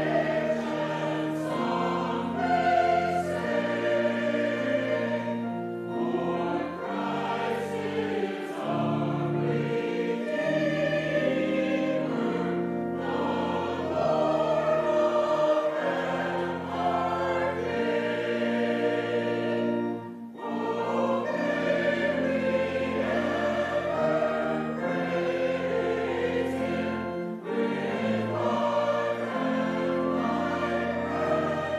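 Mixed church choir singing an anthem in harmony, with sustained low notes underneath, pausing briefly between phrases.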